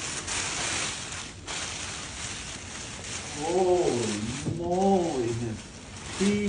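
A dog's two drawn-out vocal moans, each rising and falling in pitch, about three and a half and five seconds in, after rustling of plastic wrap.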